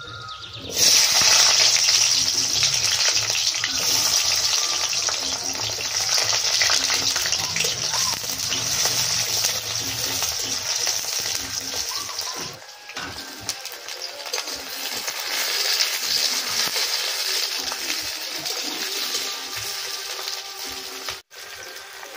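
Chopped onions dropped into hot oil in a wok over a wood fire, starting a loud sizzle suddenly about a second in. The frying then goes on steadily as they are stirred, dipping briefly just past the middle.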